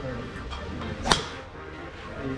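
A golf club striking a ball off a driving-range mat: one sharp crack about a second in.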